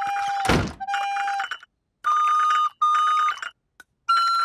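Cartoon recorder being played by a beginner: four short held notes, two at a lower pitch and then two higher, with a loud harsh burst about half a second in.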